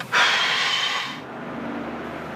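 A person sighing: one heavy, breathy exhale lasting about a second, which then fades out.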